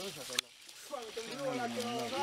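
People talking, with a sharp click about half a second in, a brief lull, and then the voices again.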